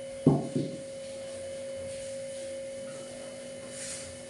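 A wooden rolling pin knocks twice on a wooden rolling board near the start as a paratha is rolled out. A steady low hum runs underneath.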